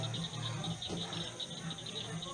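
Crickets chirping: a steady, fast run of short pulses, with a low hum underneath that comes and goes.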